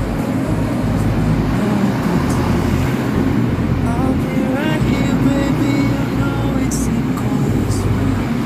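DRC-series diesel railcar passing at very close range, a loud steady engine rumble with no break. A pop song plays over it.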